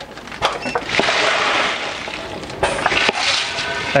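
Wood fuel pellets, soybean hulls and water dumping through a pneumatic bagger's opened knife valves into a plastic bag: a loud, continuous rushing, rattling pour, with a few sharp clicks near the start as the valves open.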